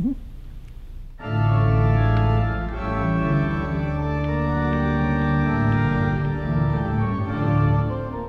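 Organ played: after about a second of quiet, sustained chords over low bass notes sound, changing in an even, slow-moving progression.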